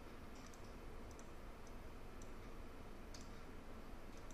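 Faint, irregular clicks from computer input (mouse buttons and keys), a few single and paired clicks with the clearest a little after three seconds, over a steady low background hiss.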